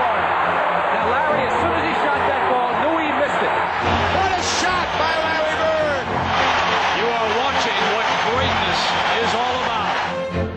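Basketball arena crowd cheering and yelling after a made basket: a loud, unbroken roar of many voices shouting over one another.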